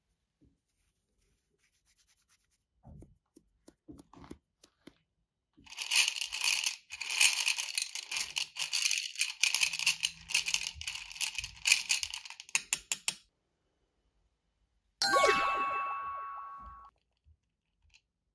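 Paintbrush bristles scrubbing rapidly in the tray for several seconds, a dense scratchy rasp. About three seconds after the scrubbing stops comes a bright ringing ding that fades over about two seconds.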